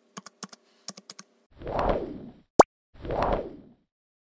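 Keyboard-typing sound effect: a run of quick clicks over the first second and a half, as text is typed into an animated search box. Then come two short swelling whooshes, with a sharp rising pop between them that is the loudest sound.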